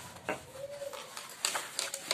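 Handling noise: a few sharp clicks and soft rustles as hands turn and fold a velvet purse on a table, with a short faint hum in the first second.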